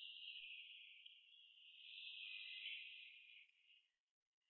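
Near silence with a faint, steady, high-pitched chirring like insects at night, which fades out in the last half second.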